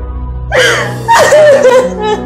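A woman crying in distress: a sharp gasping sob about half a second in, then a longer wavering cry, over a steady music score.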